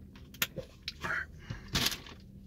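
Plastic water bottle being handled and capped: a few sharp clicks and crackles of the plastic and screw cap, then a short burst of noise near the end.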